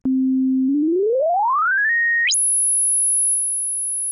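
Pure sine wave from the Massive X software synthesizer, starting as a steady tone near middle C, then gliding smoothly up in pitch and, a little past two seconds in, jumping to a very high steady whistle. It is a single clean tone with no static or stray tones: the oscillator is not aliasing.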